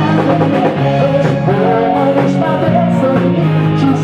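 Live cover band playing an upbeat pop-rock song: singing over electric guitar, bass, keyboards and drums.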